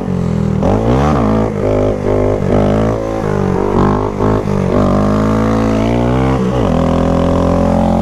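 Honda Grom's single-cylinder motorcycle engine revving hard as the bike is ridden, its pitch climbing and dropping again and again, with a longer dip about six and a half seconds in.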